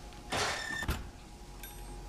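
Metal baking sheet sliding across an oven rack with a scraping screech, ending in a knock about a second in, over a steady kitchen hum.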